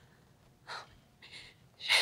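A woman's short, unvoiced gasping breaths, two quick catches a little under a second apart, then a sharper intake near the end. She is upset and breathing shakily between broken words.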